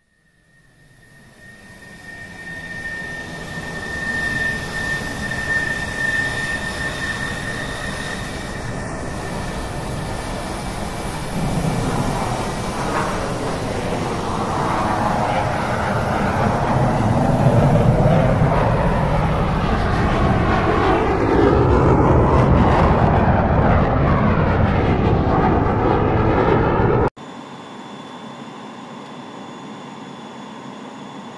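Jet airliner engine and airflow noise heard from on board during the approach. It fades in over the first few seconds with a high steady whine, grows louder in the second half, and cuts off suddenly near the end, giving way to a quieter steady hum.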